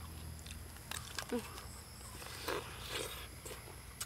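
Quiet mouth sounds of people eating soft fruit: chewing and sucking, with a few small clicks and a short hum about a second in.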